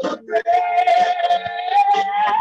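Singing with musical accompaniment: a voice holds one long high note from about half a second in, over steady lower accompanying tones.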